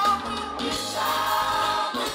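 Live gospel worship song: a male lead singer with backing singers over a band of drums, keyboards and bass guitar, with the sung melody wavering steadily.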